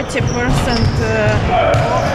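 Several basketballs being dribbled on an indoor court during team practice: a stream of irregular, overlapping thuds.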